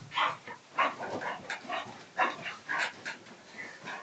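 English Bull Terrier making an irregular run of short barking and yipping noises, about three a second, as it plays in a frenzy.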